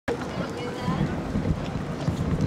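Wind buffeting the camera microphone, a low, noisy rush, with faint voices of people in the background. The sound cuts in abruptly at the start.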